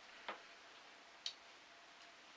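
Near quiet with two brief clicks: a small tap about a third of a second in, then a sharper, higher click about a second later, a metal teaspoon touching a porcelain cup.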